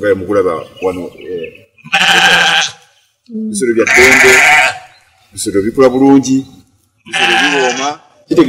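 Sheep bleating three times, at about two, four and seven seconds, between stretches of a man talking.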